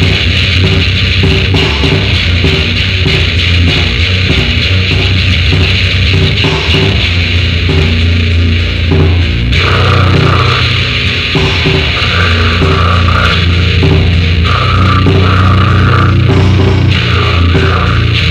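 Lo-fi raw black metal demo recording: a band playing distorted guitars and drums, with the riff changing about halfway through.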